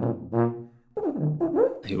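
Eastman EPH495 BBb sousaphone playing a low held note that stops about half a second in.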